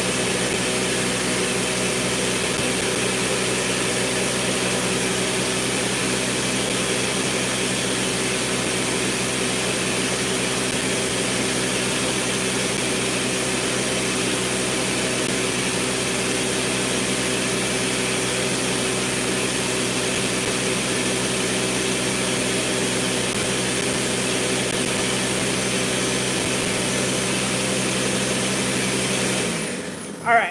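Countertop blender motor running at a steady speed, churning sea moss, aloe and water into a creamy, frothy liquid; it shuts off just before the end.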